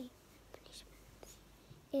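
Faint soft clicks and light squishing of slime being stretched and worked between the fingers.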